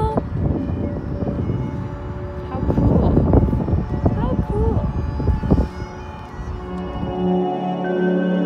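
Wind rumbling and buffeting on the microphone in gusts, with brief indistinct voices. About three seconds before the end, the wind stops and background music with sustained tones comes in.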